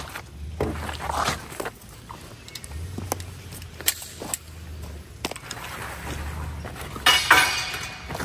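Scattered sharp metallic clicks and clinks of a pistol and gear being handled, over a steady low rumble, with a louder, noisier burst near the end.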